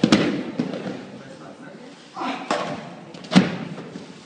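Heavy battle ropes slammed against a gym floor, giving sharp smacks at the start, about two and a half seconds in and, loudest, shortly after, each preceded by a short shout from a man's voice.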